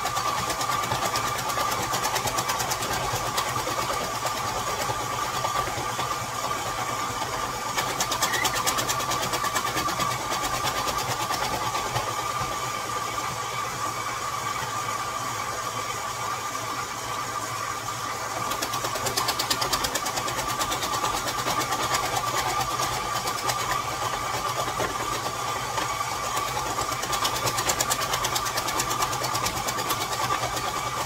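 KitchenAid 7-quart stand mixer running steadily with its dicing attachment, cutting celery into small cubes. The steady motor whine carries stretches of fast ticking about eight seconds in, around twenty seconds and near the end.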